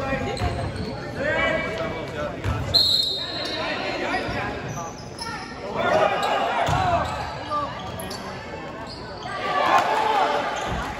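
A basketball bouncing on a hardwood gym floor during play, with players' and spectators' voices calling out in a large, echoing gym. A brief high squeak cuts in about three seconds in.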